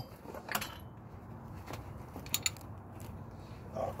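A few faint metallic clicks and taps from hand tools being handled, with a close pair of clicks in the middle, while trailing-arm bolts are being tightened down.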